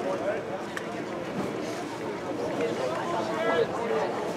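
People talking, several voices overlapping in a general chatter.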